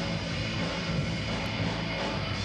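A live rock band playing loud and distorted, with a sustained droning guitar chord over the drums.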